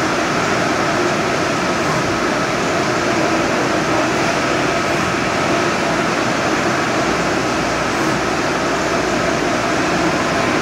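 EFI VUTEk HS100 Pro UV LED inkjet printer running while printing a vinyl banner: a steady mechanical whir and hiss with no breaks.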